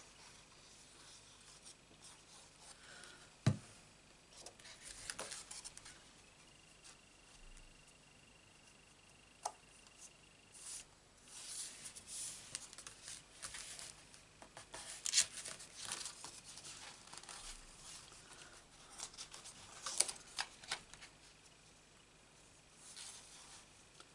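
Paper and cardstock handled by hand: intermittent soft rustling and sliding as the layers are lifted and pressed together, with a single sharp tap about three and a half seconds in.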